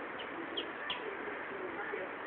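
Birds calling over a steady background hiss: a few low calls and three quick high chirps, each falling in pitch, in the first second.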